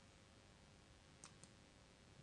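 Near silence: room tone, with two faint clicks in quick succession a little past the middle.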